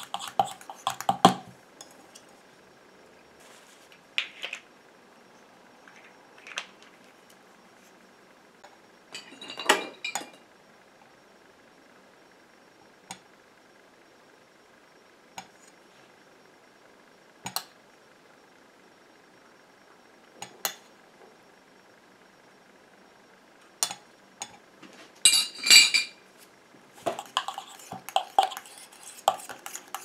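Metal spoon and spatula clinking and scraping against a small stainless steel bowl while stirring a thick, warm cream. The clinks come in scattered knocks with quiet gaps, with louder bursts around ten seconds in and around twenty-five seconds in, then turn to steady stirring near the end.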